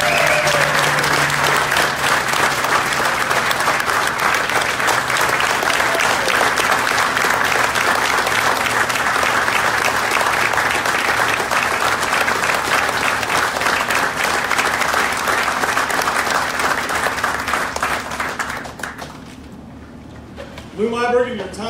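An audience applauding in a standing ovation, a dense steady clapping that dies away near the end.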